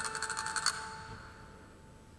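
Hand-held castanets played in a rapid roll of clicks that stops abruptly about two-thirds of a second in, over a ringing bell-like chord that fades away.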